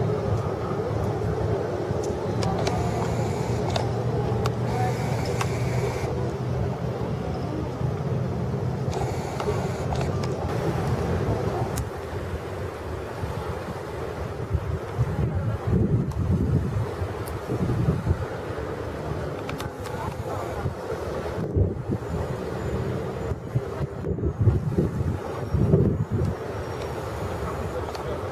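Outdoor seaside ambience: a steady low engine hum for about the first twelve seconds, then wind gusting on the microphone in uneven surges, with faint distant voices.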